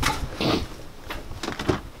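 A few light clicks and knocks from hands working a small pin screw loose at the door of a built-in camper-van refrigerator.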